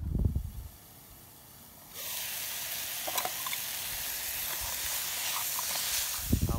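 A brief low rumble of wind on the microphone, then from about two seconds in a steady hiss of food cooking in a pot on a camping stove, with a few faint clicks of a spoon stirring in the pot.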